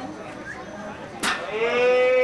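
A sharp knock about a second in, then a long, loud, high-pitched shouted call from a person held for nearly a second, over faint crowd chatter.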